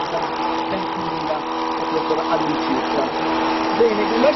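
A steady machine drone with a constant, unwavering hum, over faint voices.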